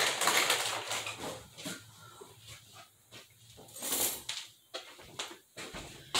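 Small dog's claws clicking on a hard tile floor as it walks about: quick, irregular light taps, densest in the first couple of seconds, with a few more later.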